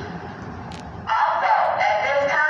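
A young man's voice cutting in loudly about a second in, after a second of quieter background noise.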